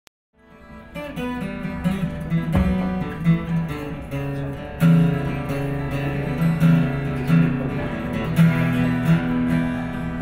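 Steel-string acoustic guitar music, with plucked notes ringing over a chord progression, fading in over the first second.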